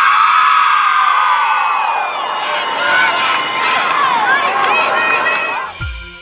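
A women's ice hockey team cheering and screaming together for a championship team photo, many high voices overlapping. Music with a deep beat cuts in near the end.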